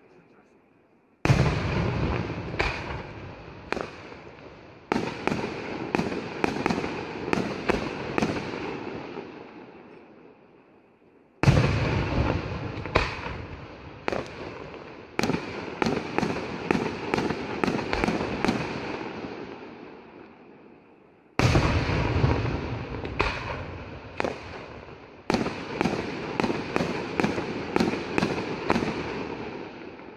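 Aerial fireworks display: three sequences about ten seconds apart. Each opens with a heavy boom and goes on into a run of sharp bangs that fades away before the next begins.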